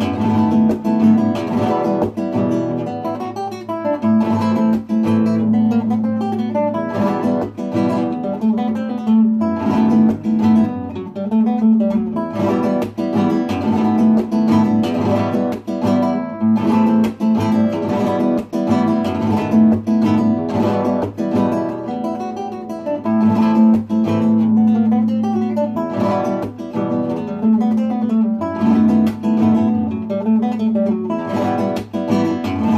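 Solo classical guitar playing a flamenco rumba, with dense rhythmic strummed chords and plucked notes.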